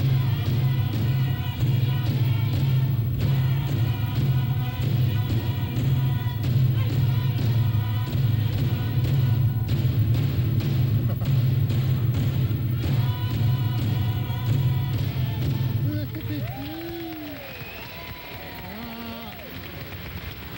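Iñupiaq drum-dance song: group singing over frame drums beaten in a steady rhythm, ending about three-quarters of the way through. A few voices follow more quietly.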